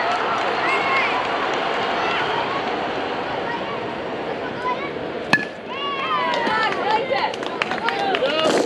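Spectators chattering, then the sharp crack of a bat hitting the ball about five seconds in, followed by excited shouting and cheering from the crowd as the ball is put in play.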